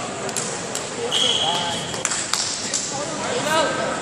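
Wrestling-hall ambience: voices calling out, scattered sharp knocks and thuds, and a steady high whistle lasting about a second, starting about a second in.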